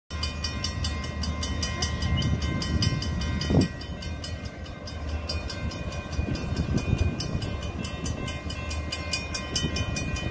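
Railroad grade-crossing bell dinging at about four strikes a second over the low rumble of an approaching diesel freight locomotive, with a brief louder burst about three and a half seconds in.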